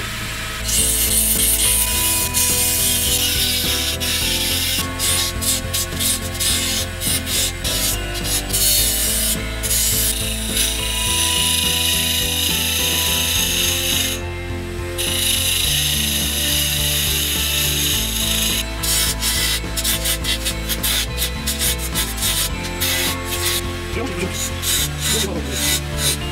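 Wood lathe spinning a green birch blank while a cheap, roughly sharpened flat chisel scrapes against it: a steady rasping scrape of steel on wood over the low hum of the lathe. The scrape breaks off briefly a few times, once for about a second near the middle, as the tool leaves the wood.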